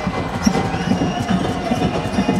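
Crowd noise in a sports hall with irregular knocks, among them a basketball dribbled on the wooden court.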